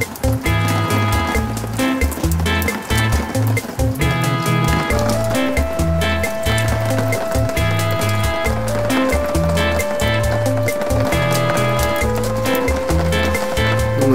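Background music with a steady beat and a bass line, with a held melody note entering about a third of the way in.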